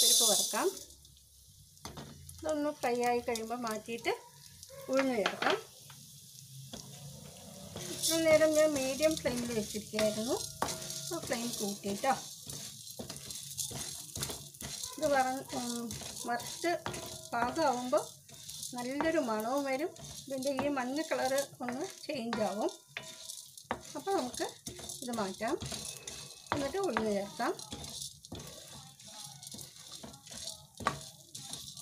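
Chana dal grains poured into a dark pan at the start, then turned and stirred with a ladle as they roast: a light sizzle with grains rattling and scraping against the pan. The hiss swells again about eight seconds in.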